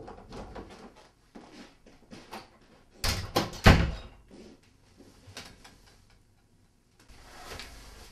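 An interior door shut with a slam about three seconds in: a quick cluster of knocks and rattles, the last one the loudest. Softer rustling and handling noises come before and after it.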